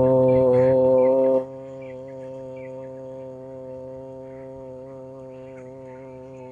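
A steady, pitched buzzing drone, loud for about the first second and a half, then dropping sharply and carrying on evenly at a lower level.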